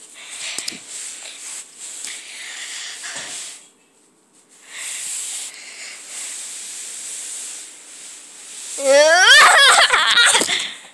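Rustling, rubbing noise with a brief pause about halfway, then near the end a child's loud, high-pitched squeal whose pitch slides up and down.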